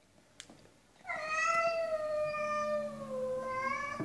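A cat yowling: one long, drawn-out call starting about a second in and lasting about three seconds, its pitch sagging slightly toward the end. It is the threat yowl of a cat facing off with another cat.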